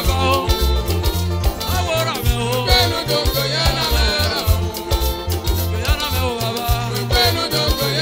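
Live highlife band playing a danceable groove: electric guitar over a moving bass line and a steady percussion beat, with a singer's voice rising and falling over it.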